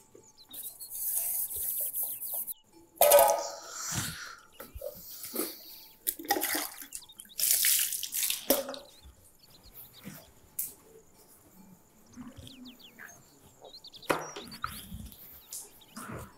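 Steel kitchen utensils being washed by hand: water splashing and being poured in several bursts, with clinks and scrapes of metal bowls and pots.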